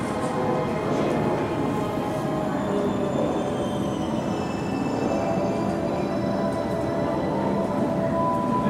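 A steady, dense background din with music in it: indoor room ambience, with high thin tones joining about three seconds in.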